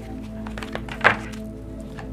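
Deck of tarot cards being shuffled by hand: a few soft knocks of cards against the pack, the loudest about a second in, over steady background music.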